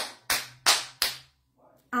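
One person clapping her hands four times, about three claps a second.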